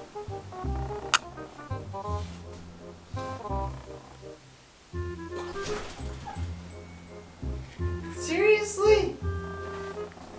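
Background music with a bass line and short repeating keyboard-like notes. A sharp click comes about a second in, and near the end a voice cries out briefly.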